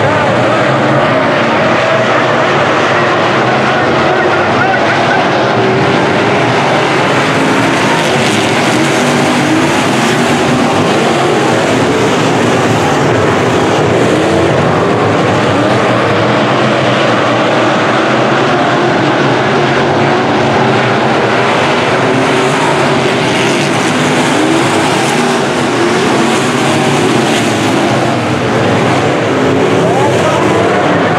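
A field of IMCA sport modified dirt-track race cars racing together, many V8 engines running hard at once, their pitches rising and falling as the cars accelerate down the straights and lift for the turns.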